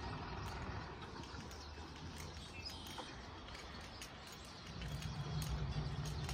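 Quiet outdoor ambience: a faint steady background hiss with a few soft ticks, and a low rumble building about five seconds in.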